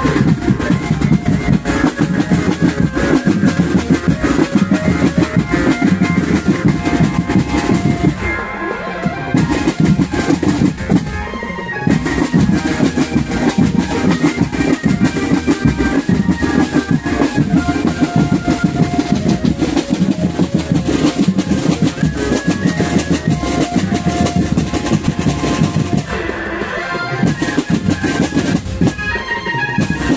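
Indonesian marching drumband playing live: a fast, dense beat of snare and bass drums under a melody line. The drums drop out briefly about eight seconds in, again around twelve seconds, and twice near the end.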